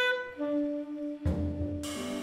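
Live jazz band: a saxophone sounds a sharp held note, then moves to a lower note about half a second in, over the band. Two drum and cymbal strikes come in the second half, the second, near the end, the loudest.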